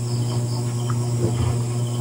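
A steady low hum, with insects chirring steadily and high-pitched behind it.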